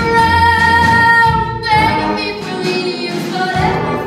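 A woman sings a musical-theatre song over accompaniment. She holds one long high note for about a second and a half, then the melody moves on.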